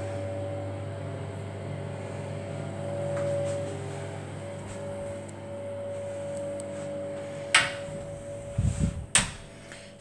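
Steady low mechanical hum with a faint higher whine. Near the end it is broken by a few knocks and low thumps.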